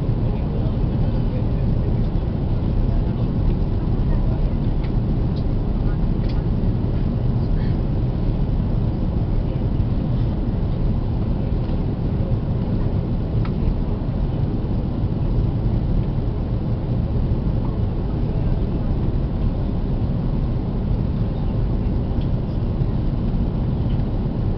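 Steady low cabin rumble inside an Airbus A330-300 in descent: the jet engines and the rush of air over the fuselage, heard from a window seat over the wing, with a few faint ticks.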